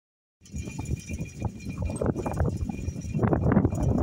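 Gusty wind buffeting a phone's microphone: an irregular low rumble that starts about half a second in and grows stronger.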